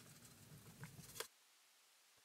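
Near silence: a few faint ticks and rubs from a plastic watercolour palette being wiped clean, then the sound cuts out completely just over a second in.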